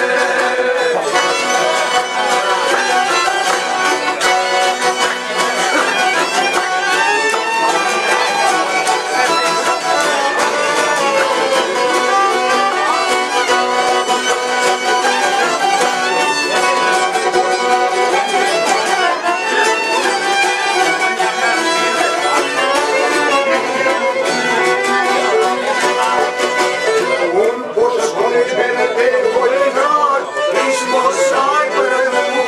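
Albanian folk ensemble playing an instrumental passage: a bowed violin carries the melody over strummed long-necked lutes and an accordion.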